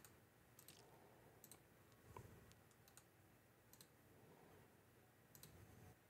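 Near silence with a few faint computer mouse clicks, some in quick pairs.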